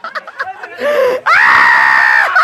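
Excited voices, then a loud, high-pitched human scream starting just past halfway and held for about a second, among onlookers at an amateur boxing bout.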